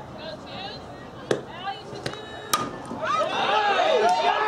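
A softball bat hitting a pitched ball about two and a half seconds in: a sharp crack followed by a brief ring. A smaller knock comes about a second in. The impact is followed by spectators shouting and cheering.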